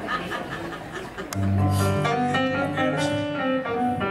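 A live band's keyboard and bass come in about a second in with held chords that change a few times, an intro to a slow ballad.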